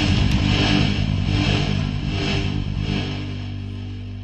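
The final chord of a rock song ringing out and slowly fading away, with electric guitar and bass sustaining the chord as it grows steadily quieter.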